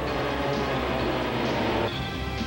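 Propeller aircraft engines droning steadily. The drone thins out suddenly near the end.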